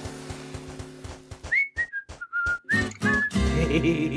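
Cartoon background music, then about a second and a half in a short whistled tune of about seven separate notes that step down in pitch and come back up a little, before the music picks up again.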